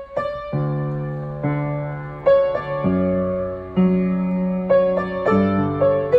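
Upright piano playing a slow two-handed pattern. The right hand alternates the C-sharp and D notes while the left hand adds bass notes D, F-sharp, G and A, each struck note ringing and fading before the next.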